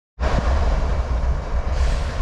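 Freight train rumbling trackside: a loud, steady low rumble with a wash of rolling noise, cutting in abruptly just after the start.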